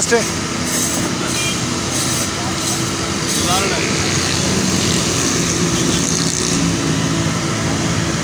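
Steady street traffic and engine noise, with a low running hum throughout and faint voices in the background.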